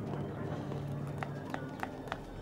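Hard-soled shoes clicking on pavement, several steps about a third of a second apart in the second half, over low street ambience with faint voices.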